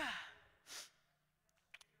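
A woman's short breathy sigh into a handheld microphone, about half a second in, after the fading tail of her voice. A few faint clicks follow near the end.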